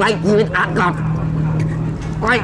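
A man's strained, choking vocal sounds in about the first second, over a steady low hum that carries on through the rest.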